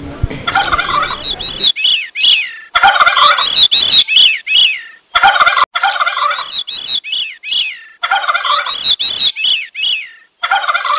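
Bird calls: rapid series of rising-and-falling notes, about three a second, in bursts of one to three seconds with short gaps between, after a brief low rumble in the first second or so.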